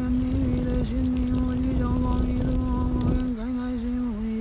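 A voice chanting a sutra on one long held note, the pitch dipping slightly now and then. Beneath it is the low rush and faint crackle of a fire, which drops away a little after three seconds in.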